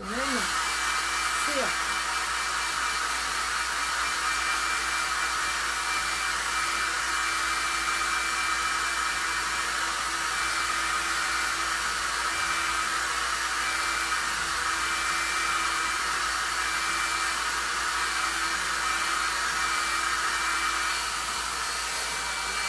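Hand-held hair dryer running steadily, a rush of air with a steady high whine, blown onto a freshly painted wooden box to dry the wet metallic pewter paint.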